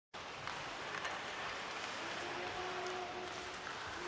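Ice-hockey arena ambience during live play: a steady hiss of rink and crowd noise with a few faint clicks from sticks, puck and skates on the ice, and a faint held tone in the middle.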